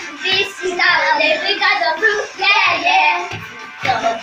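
Children singing a song over music.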